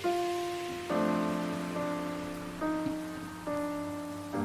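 Background music: soft, sustained piano-like notes and chords, a new one struck about every second, over a steady high hiss.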